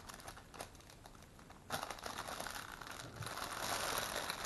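Clear plastic packaging bag crinkling as a child's dress is pulled out of it. The bag is mostly quiet at first and crackles steadily from a little under two seconds in.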